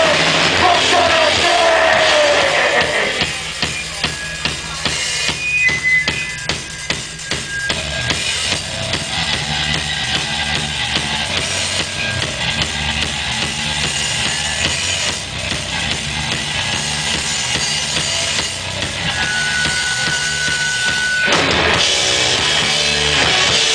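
Live crust/hardcore band: for the first few seconds the full band plays loud. It then drops to a drum-kit break with a low sustained bass under the regular drum hits, and the full band crashes back in loud just before the end.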